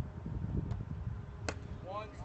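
Irregular low rumble of wind buffeting the microphone. Faint distant voices underneath, and one sharp click about one and a half seconds in.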